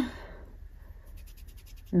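Fingertip rubbing across the pans of a Wet n Wild powder eyeshadow palette: a faint run of about ten quick, light scratches in the second half.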